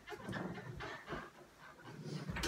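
Soft rustling and handling noise as a wooden bedroom door is swung shut by its handle.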